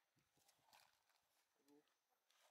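Near silence: faint outdoor room tone with a few soft clicks and a brief faint pitched sound near the end.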